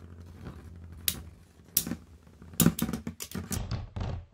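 Two metal Beyblade spinning tops, L-Drago Destroy and Fang Pegasus, whirring low and steady on a plastic stadium floor and clacking against each other. There is a single clack twice in the first two seconds, then a quick run of clacks as they wobble together and spin down near the end.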